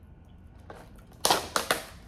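A thin clear plastic clamshell container crackling and clicking as it is handled and pried open: a quick cluster of sharp crackles starting a little past halfway.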